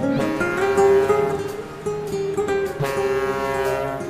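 Instrumental introduction of a Turkish arabesk song, led by plucked strings, with fresh strums about two and three seconds in.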